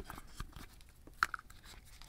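Faint handling noise: small clicks and rubbing as a plastic earbud charging case is fitted into a leather protective case, with one sharper click a little past a second in.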